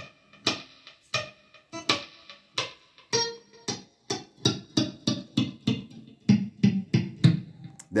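Electric guitar played with a left-hand mute: the fretting fingers rest lightly on the strings without pressing them down, so each picked note comes out short and dampened. A steady run of plucks, about three a second.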